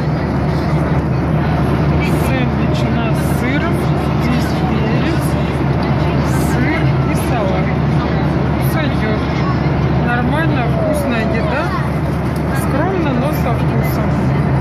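Steady drone of an airliner cabin in flight, with other passengers' voices talking in the background.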